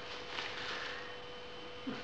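Quiet room tone with a steady electrical hum at one pitch, and a small tick near the end.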